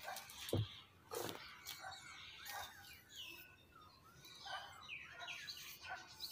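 Small birds chirping in quick, repeated short calls. There is a low thump about half a second in and a short scrape about a second in.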